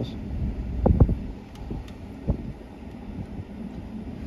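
Ford F-150 pickup rolling slowly along a bumpy back road: a steady low rumble of tyres and running gear with wind noise at the open window, and a couple of short knocks as it bumps, about a second in and again a little after two seconds.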